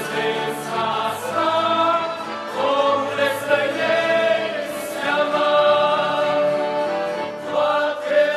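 A men's vocal group singing a church song in several voices, with two accordions and a guitar accompanying; long held notes in the middle, and a new phrase begins near the end.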